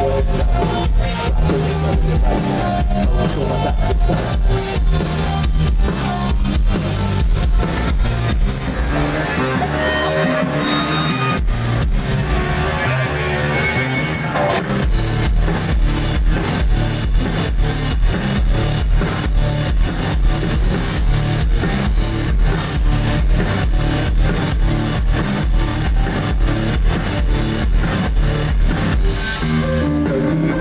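A live rock band plays: electric guitars, bass, drum kit and keyboards through the PA. About nine seconds in, the bass and kick drum drop out for a few seconds, and the full band comes back in around the middle.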